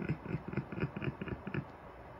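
A person's quiet voice in a run of short, rapid syllables, about five a second, without clear words.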